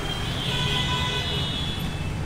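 Street traffic: a steady low rumble of cars idling and creeping in a queue. A higher hiss sits over it for about a second in the middle.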